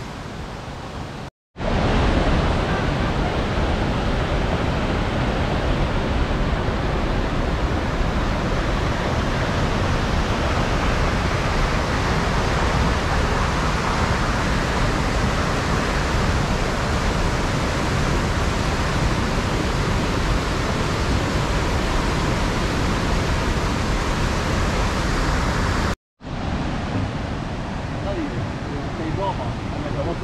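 A shallow clear stream rippling briefly, then after a cut a loud, steady rush of cascading river water, which ends abruptly with another cut near the end.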